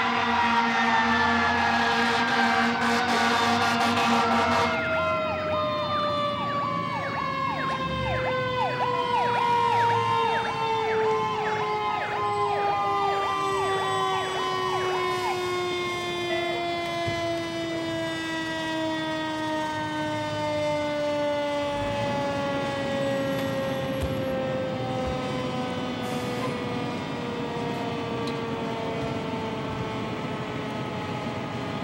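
Fire truck sirens on arrival. A horn blares for the first few seconds, and a fast yelping siren runs to about halfway. Under both, a wailing siren slides slowly down in pitch throughout as it winds down.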